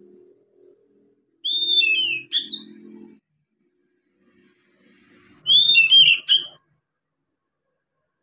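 Young oriental magpie-robin singing, a juvenile just starting to sing: two short phrases of gliding whistled notes mixed with clicks. The first comes about a second and a half in, the second about five and a half seconds in.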